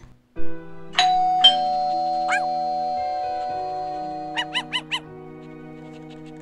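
Two-note doorbell chime, a higher ding then a lower dong about a second in, the first note ringing on for several seconds, over soft background music. A few short high chirps come near the end.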